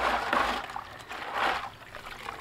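Gold stripping solution sloshing and splashing in a plastic bucket as a stainless steel mesh basket of circuit-board scrap is agitated and lifted out, with liquid trickling off the basket. It comes in two splashy surges about a second apart.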